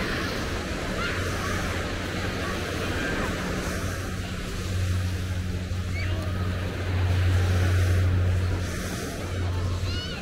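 Small waves washing onto a sandy beach, with wind on the microphone. Under it runs a low steady hum that grows louder for a few seconds past the middle.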